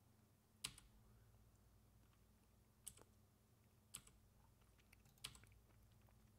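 Faint, sparse keystrokes on a computer keyboard: four distinct key presses one to two seconds apart, with a few lighter taps between, over a low steady hum.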